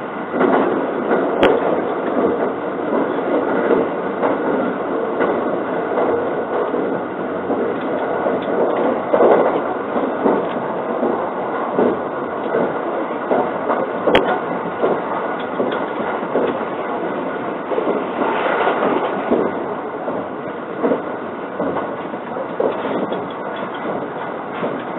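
A JR 681-series limited express electric train running, heard from inside the passenger car: a steady noise of wheels on rail and running gear. Two sharp clicks stand out, one about a second and a half in and one about halfway through.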